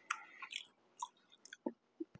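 A man chewing a mouthful of spaghetti close to the microphone: a few faint, separate wet chewing sounds.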